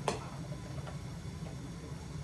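A single sharp click, then two fainter ticks, over a steady low hum.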